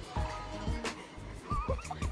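Background music with a steady kick-drum beat, a stroke roughly every two-thirds of a second; in the second half, wavering high-pitched tones glide up and down over the beat.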